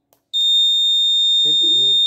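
Electronic buzzer on an Arduino board sounding one long, steady, high-pitched beep, starting a third of a second in. It is the confirmation beep as the set button finishes the timer setting and the settings are saved to memory.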